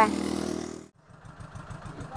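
A small engine running steadily, a low even hum that cuts off abruptly about a second in, leaving a faint low rumble.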